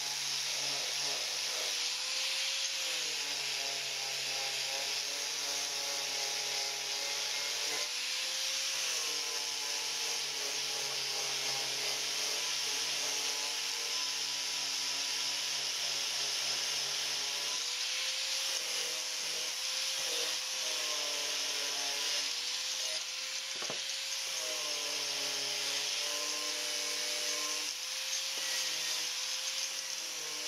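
Angle grinder running a blue clean-and-strip abrasive disc over a steel plate, scouring off mill scale and rust with a steady harsh hiss. The motor's whine dips and recovers several times as the disc is loaded against the plate.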